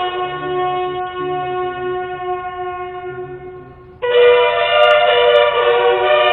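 A line of ceremonial buglers sounding a bugle call in unison. A long held note slowly fades, then about four seconds in a louder, higher note starts, and the pitch steps down again near the end.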